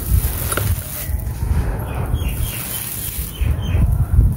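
Gritty red dirt and small stones crumbling and pattering as a handful is let fall through the fingers and hands rake through the loose soil.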